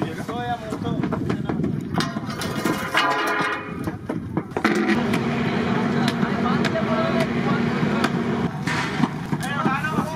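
Prawns deep-frying in a large pan of hot oil, a steady sizzle under people talking. A steady low hum comes in suddenly about halfway and stops shortly before the end.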